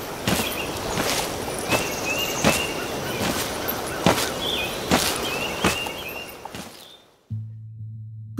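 Slow, heavy footsteps on a forest floor, about one step every three-quarters of a second, over a steady outdoor hiss with a few short high chirps. The steps fade away near the end and a low steady hum comes in.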